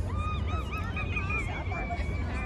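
High-pitched children's voices cheering in long, wavering calls, a second voice overlapping the first about halfway through.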